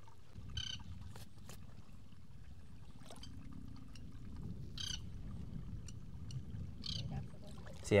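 Distant thunder, a low rolling rumble that sets in just after the start and keeps going, with three short high calls over it.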